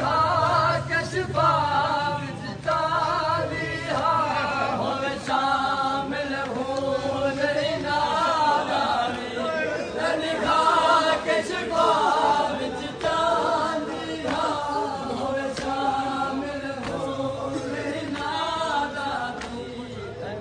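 A group of men chanting a noha, a Shia mourning lament, together in unison without instruments, carrying on throughout.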